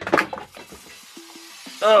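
Glass Coca-Cola bottles in a cardboard carton clattering and clinking as they are knocked over, sharpest in the first moments, followed by a faint hiss of spilled soda fizzing.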